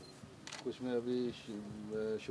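Only speech: quiet conversational talk between men, heard as low-level location sound.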